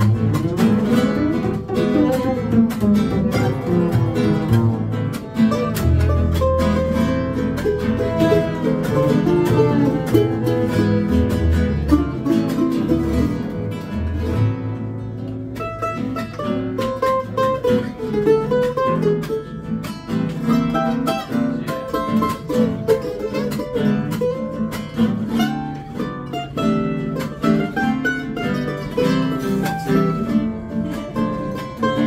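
Acoustic string band playing an Argentine chacarera: strummed acoustic guitar with fiddle, mandolin and upright bass, the bass notes standing out in the middle stretch.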